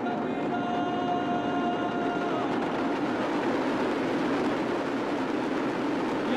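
Conch shells blown in a long held note over a dense, continuous rattle of damru drums. The conch note sounds through the first two seconds or so, then fades into the drumming din.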